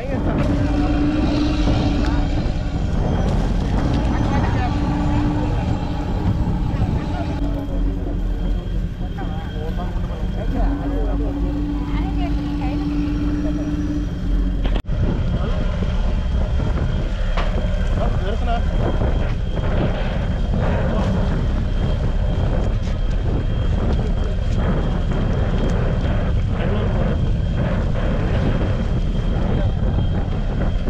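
Busy fishing-harbour background: a steady low rumble with people talking over it. In the first half, a low droning hum starts and stops three times.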